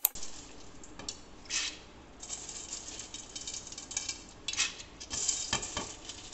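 Handfuls of dry noodles rustling in an aluminium colander and dropping into a pot of hot salted water, in several crackly bursts, with a sharp click right at the start.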